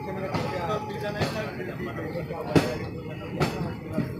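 Indistinct voices in a moving passenger train, with four sharp knocks from the running train spread through; the loudest comes about two and a half seconds in.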